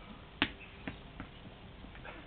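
A tennis ball dropped off a chair bouncing on a hard floor: one sharp knock about half a second in, then two fainter bounces coming quicker.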